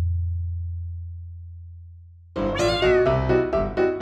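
Editing sound effects: the low tone of a deep impact hit dies away, then about two and a half seconds in a short meow-like call falls in pitch and light piano background music starts.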